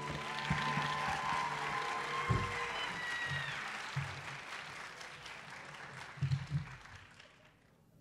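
Audience applause after a solo song, starting as the last note ends, dying away about seven and a half seconds in. A few low thumps sound through it.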